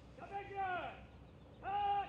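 Shouted military drill commands: one drawn-out call lasting under a second that falls in pitch at its end, then a second call beginning near the end.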